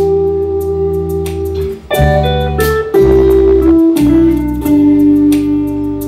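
Live rock band playing an instrumental passage: held electric guitar chords over drums with steady cymbal hits, loud, with a brief drop near two seconds in and a chord change after it.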